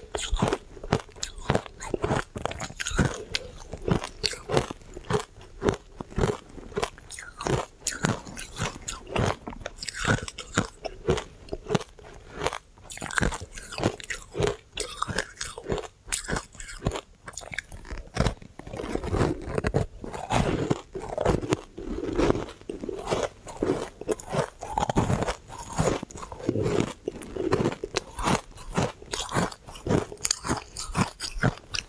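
Refrozen shaved ice being bitten and chewed: a steady run of sharp, crunchy bites and chews, one after another, with no pause.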